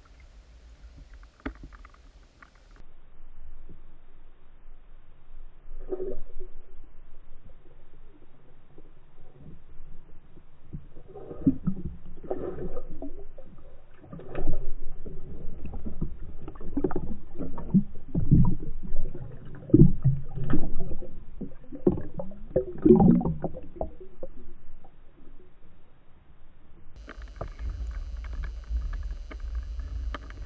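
Muffled underwater water noise picked up by a submerged camera: low rumbling, gurgling surges and knocks. They come sparsely at first, then crowd together and grow loudest through the middle as a pike thrashes at the dead baits, then ease off.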